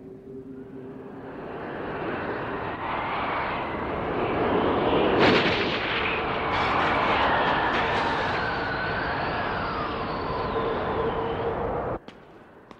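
Animated blizzard sound effect: wind noise swells over the first couple of seconds into a loud howl, with a whistling tone that glides up and down. A sudden sharp burst comes about five seconds in, and the sound cuts off abruptly at the end.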